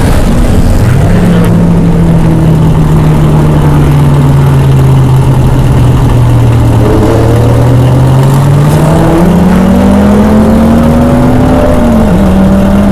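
Dodge Viper's V10 engine running hard on a race track. The note holds fairly level at first, then climbs steadily in pitch over the last few seconds as the car accelerates.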